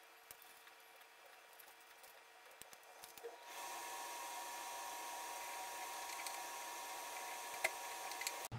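Faint clicks and taps of hands pressing a small plastic camera and its adhesive mount against a wall. About halfway through, a steady hiss with a faint high hum sets in abruptly and carries on.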